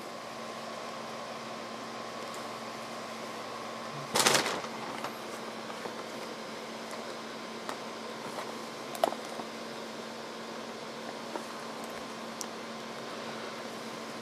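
Steady low hiss with a faint hum, broken by a short handling noise about four seconds in and a faint click near nine seconds, as hands turn and grip a small plastic clock radio.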